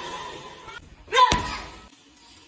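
A gloved punch landing on a hanging teardrop heavy bag: one sharp slap about a second and a quarter in, just after a brief voiced sound.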